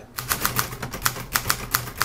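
Groma Kolibri ultraportable manual typewriter being typed on at a steady pace, sitting on a plastic folding table: a rapid, uneven run of sharp key and typebar strikes, about six a second.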